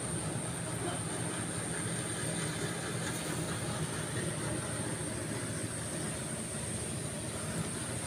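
Steady low drone of a rice thresher's engine running in the field, with a faint steady high whine above it.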